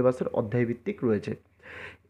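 A man speaking, then a quick audible breath in near the end.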